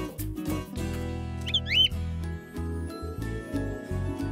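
Gentle background music for a children's cartoon, with held notes over a bass line. A brief high chirp, like a bird's, comes about a second and a half in.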